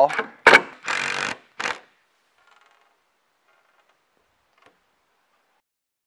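A sharp knock on wood about half a second in, from the board being set against the wall, followed by two short hissing bursts of handling noise, then near silence.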